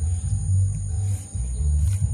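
Music over loudspeakers from a nearby celebration, heard mostly as its deep bass notes, with a steady high whine above it.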